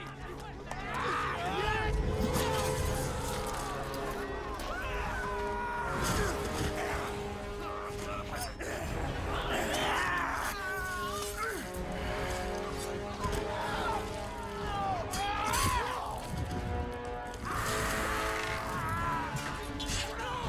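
Film battle soundtrack: men shouting, yelling and screaming in close combat over a dramatic orchestral score, with a few sharp blows of weapons striking.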